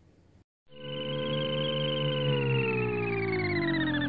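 A synthesized electronic tone, starting just under a second in and gliding slowly downward in pitch with a slight waver.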